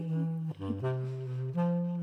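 Bass clarinet playing a short jazz fill of a few held notes, moving to a new pitch about every half second, over piano accompaniment between the sung lines.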